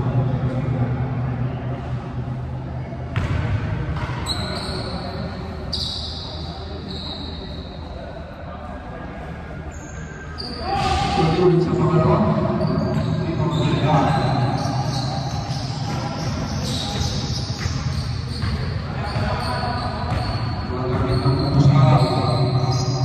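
A basketball bouncing on a hardwood gym court during live play, with players' voices and shouts echoing in the hall. The sound gets louder about ten seconds in, as play picks up.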